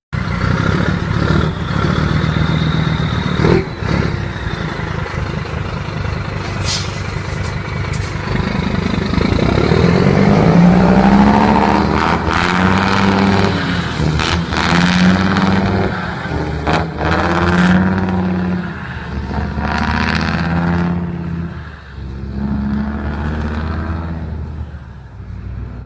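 Heavy truck's diesel engine with a straight-pipe exhaust, loud and revved hard. From about halfway through it is blipped in repeated swells roughly every two seconds, with sharp cracks from the exhaust scattered throughout.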